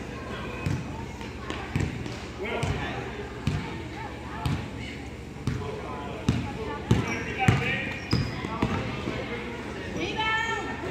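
A basketball dribbled on a hard gym floor, bouncing about once a second, echoing in the large hall, with voices in the background.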